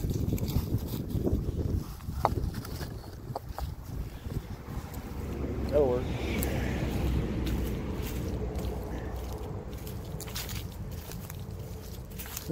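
Wind buffeting the microphone as a low rumble, with footsteps crunching through dry grass and leaves as scattered clicks. About six seconds in comes one short wavering whine.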